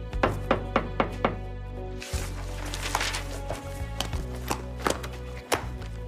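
Soft background music with a quick run of about five knocks on a door in the first second and a half, followed by scattered lighter clicks and handling noise.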